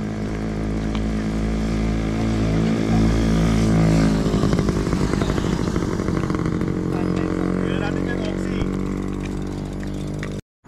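An engine running steadily, swelling to its loudest about three to four seconds in, then running on with a rougher, pulsing note.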